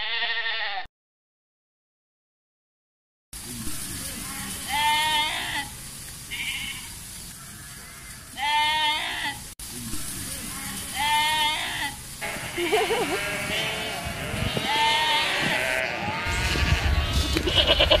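Sheep bleating: single quavering bleats every two to three seconds, becoming several overlapping calls near the end as a louder low noise joins in.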